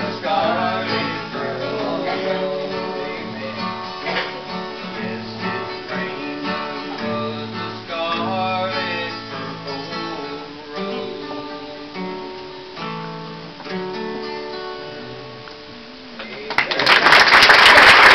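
Acoustic guitar playing the close of a gospel song, with voices singing in places, the music growing quieter toward the end. About sixteen and a half seconds in, the audience breaks into loud applause.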